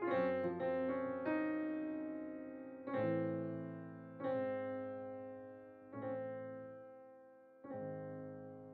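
Slow background piano music: chords struck every one to two seconds, each left to ring and die away.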